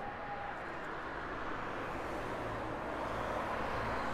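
City street traffic noise, a steady rush that swells toward the end as a vehicle draws near, with a low engine hum coming in partway through. A faint steady high tone stops about half a second in.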